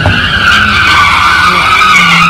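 A Mercedes car's tyres squealing in one loud, continuous screech as it spins in tight circles on the road surface, throwing up tyre smoke, with the engine running underneath.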